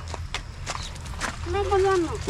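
Scattered light clicks and knocks of a metal gate being handled, with a short high call near the end.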